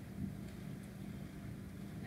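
Faint steady background noise of the recording: a low hum with a light hiss, and no distinct sound events.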